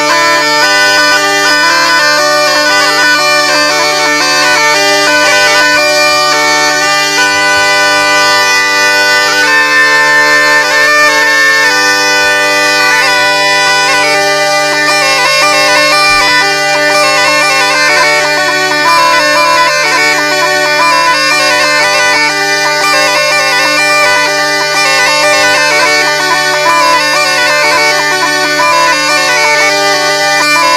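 Bagpipe music: a steady low drone held under a melody that steps from note to note.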